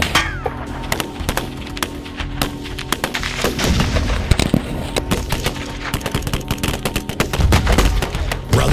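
Gunfire: many rapid, irregular shots in quick succession over background music.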